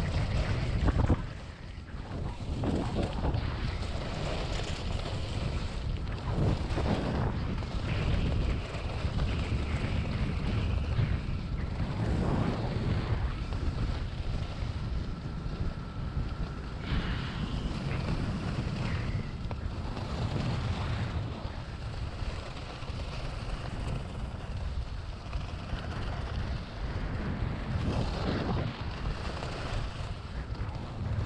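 Wind rushing and buffeting over the microphone of a skier's camera during a fast descent, mixed with the hiss and scrape of skis on packed snow that swells with each turn.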